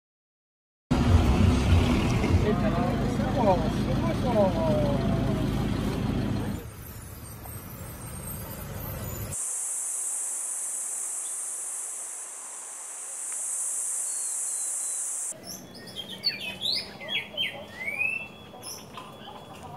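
Outdoor rural ambience over cut-together shots, starting about a second in. First comes a few seconds of loud rushing, rumbling noise with some wavering calls, then a steady high-pitched insect buzz for about six seconds, and near the end birds chirping.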